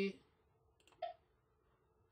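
A few faint computer mouse clicks: light ticks just before a second in, then one sharper click.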